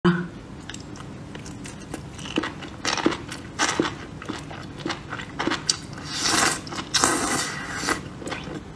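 Close-up mouth sounds of eating chili-coated food: a bite followed by wet chewing with small clicks, and two louder crunchy, squishy bursts about six and seven seconds in.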